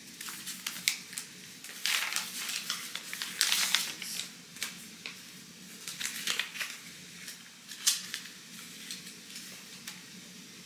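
Paper handling: a small paper envelope being opened and the folded sheets inside pulled out and unfolded, in irregular rustles and crinkles, the loudest a few seconds in.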